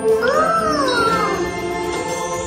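Orchestral dark-ride music, with one animal-like squeal from an animatronic monkey that rises and then falls over about a second.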